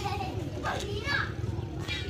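Faint children's voices and chatter in the background, over a steady low hum.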